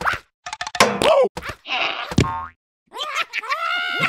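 Slapstick cartoon sound effects: quick hits and a springy boing among short sliding sounds, then a wordless cartoon-creature voice that rises in pitch and holds near the end.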